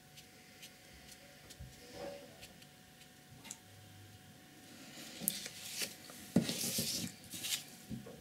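A sheet of painting paper slid and turned on a cloth-covered table: a rubbing, scraping rustle starting about five seconds in and lasting a couple of seconds, loudest near the end. Faint steady ticking runs beneath it.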